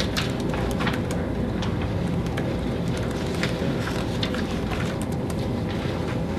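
Laptop keyboard keys clicking in irregular runs, with papers handled, over a steady low background hum.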